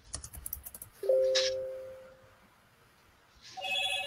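Two electronic notification tones. About a second in, a two-note chime sounds and fades away over about a second. A second tone with several notes starts near the end. A few soft clicks come before the first chime.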